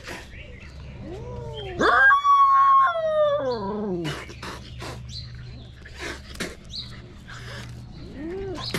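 A dog's drawn-out whining cry, loud and sliding down in pitch at its end, about two seconds in, after a couple of short rising-and-falling whimpers, while it play-fights with a kitten. Scattered short taps and scuffles around it.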